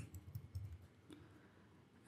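Faint computer keyboard typing, a few quick key clicks in the first second, then near silence.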